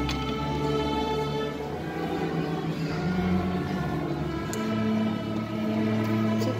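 Student string orchestra, mostly violins, bowing slow, sustained notes that move to new pitches every second or two.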